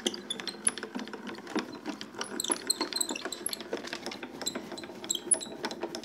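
Hand-cranked Spellbinders Grand Calibur die-cutting and embossing machine being turned, rolling a plate sandwich with an embossing folder through its rollers, with a run of irregular mechanical clicks.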